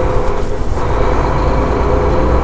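Semi truck's diesel engine running steadily at low speed, heard from inside the cab as the truck rolls slowly: a constant low rumble with a steady hum over it.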